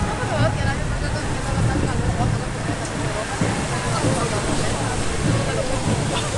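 Busy street sound: people talking near the microphone over the steady rumble of car traffic passing on a wide road below.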